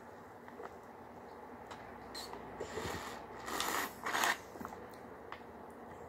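Foil drink pouch with a straw being handled, giving two short, noisy crinkling bursts near the middle along with a few faint clicks.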